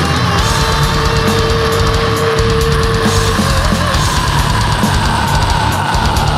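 Heavy metal recording: loud, dense distorted electric guitars over a drum kit, with one long held note in the first half and a slowly falling note after it.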